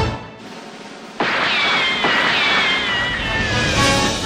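The music stops, and about a second later a single long, harsh animal cry starts suddenly. Its pitch falls with a wavering, stepwise descent for about two and a half seconds, then the music comes back in.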